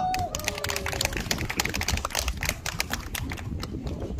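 Scattered hand clapping from a small audience: a run of sharp, uneven claps, several a second, thinning out towards the end.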